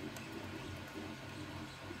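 Quiet room tone with a faint steady low hum, and faint handling noise as the DJI Mini 3 drone's plastic arms are swung out by hand.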